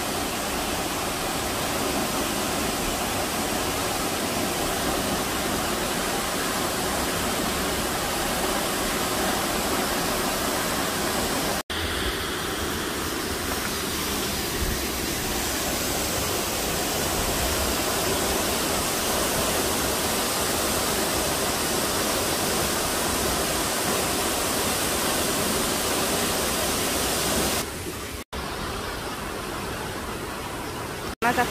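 Steady rush of a waterfall pouring into its plunge pool, an even roar of water with no pitch. It is broken by a brief gap about twelve seconds in and another near the end.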